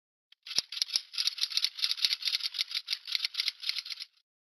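Rapid, even rattling like a shaker, about six strokes a second, starting about half a second in.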